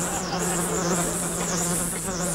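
A fly buzzing around in a steady drone, its higher whine rising and falling as it darts about.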